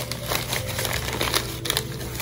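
Crumpled packing paper crinkling and rustling in quick, irregular crackles as it is pulled away by hand to unwrap a glass piece.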